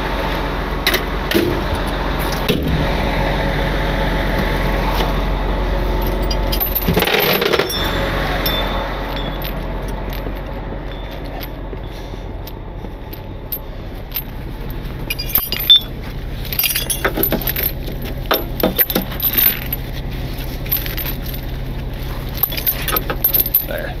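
Steel recovery chain clinking and rattling in short bursts as it is handled and wrapped around a truck tire, mostly in the second half. Under it a truck engine runs at a steady idle, louder in the first several seconds.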